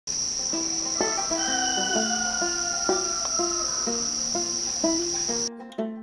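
Plucked-string background music, a note about every half second, over a steady high chorus of insects from a dusk woodland. The insect chorus cuts off suddenly about five and a half seconds in while the music carries on.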